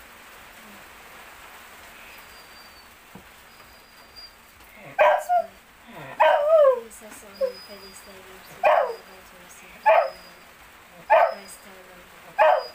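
Dog barking: a series of about six short, loud barks roughly a second apart, starting about five seconds in after a quiet stretch.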